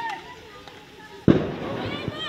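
A single loud bang about a second and a quarter in, dying away over a fraction of a second, heard over people's voices.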